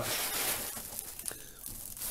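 Plastic wrap and bubble wrap crinkling and rustling as a plastic-wrapped lampshade is pulled out of its packing, loudest in the first second and then dying down.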